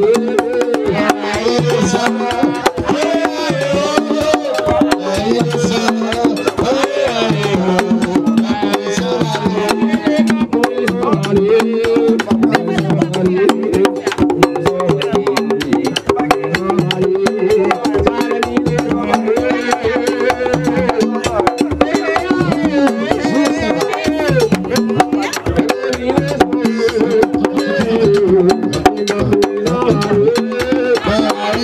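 Haitian Vodou ceremonial music: dense drumming with singing voices over it, loud and unbroken throughout.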